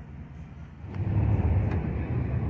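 Low rumble of street traffic, growing louder about a second in.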